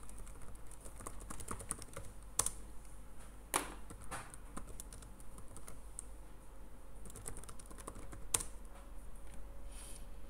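Typing on a computer keyboard: a quick, uneven run of key clicks as a search is entered, with a few louder clicks among them, about two and a half, three and a half and eight and a half seconds in.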